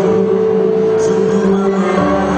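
Live singing: a man holding one long note into a microphone over sustained accompaniment, the note ending near the end.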